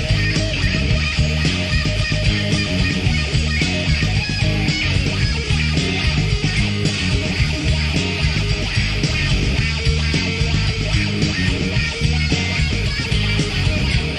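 Rock song with guitar, loud and dense with no let-up.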